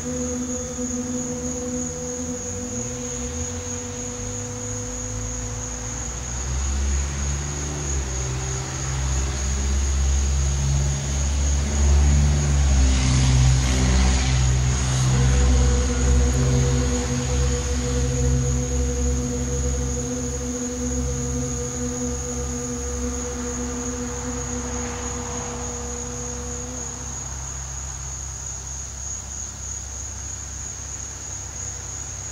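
A woman's long, breathy 'shhh' exhalation, the Qi Gong healing sound 'shu' for the liver, loudest about halfway through. It sits over a steady low drone and a constant high whine of crickets.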